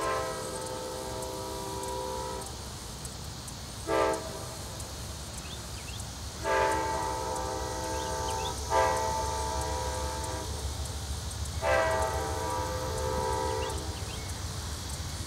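Amtrak P42DC diesel locomotive's multi-chime air horn sounding for a grade crossing as the train approaches: a long blast, a short one, then three more long blasts. A low diesel rumble underneath grows stronger toward the end.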